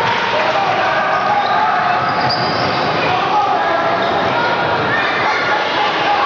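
Youth basketball game in a gymnasium: a basketball bouncing on the hardwood floor as players run the court, under steady spectator and player voices echoing in the large hall.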